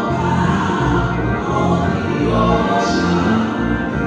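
Live gospel music: women's voices singing over sustained instrumental accompaniment.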